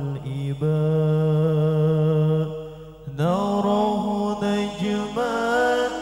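Male lead voice singing a sholawat, an Islamic devotional song, through a microphone, holding long notes with a slight waver. One long note fades at about two and a half seconds, and a new phrase starts about three seconds in.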